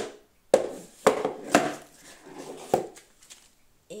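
Plastic plant pots being handled and set down, knocking and clattering: five or so sharp knocks in the first three seconds, then quieter handling.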